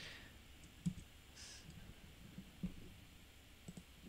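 A few faint, separate clicks of a computer mouse over quiet room tone.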